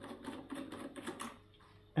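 Light, irregular clicking and scraping of a compact fluorescent bulb's plastic base being unscrewed from its socket, stopping about one and a half seconds in.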